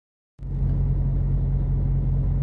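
Truck engine and road rumble heard inside the cab: a steady low rumble that starts about half a second in.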